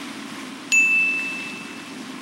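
A single bright chime-like ding about two-thirds of a second in: one high ringing tone that fades away over about a second.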